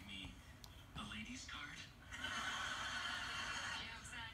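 A young woman's quiet voice murmuring, then, about two seconds in, a long breathy exhale lasting nearly two seconds.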